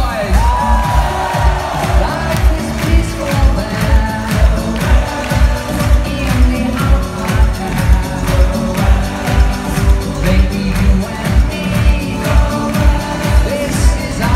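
Live synth-pop song played loud through a concert PA, with a steady dance beat and synth melody, as heard from the audience.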